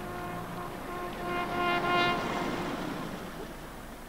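A car drives past close by, its noise swelling to a peak about halfway through and then fading, under a held, repeated note of background music.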